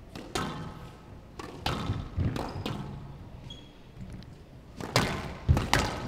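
Squash ball being struck by rackets and hitting the walls of a glass court during a rally: a series of sharp, irregular knocks, the loudest two near the end.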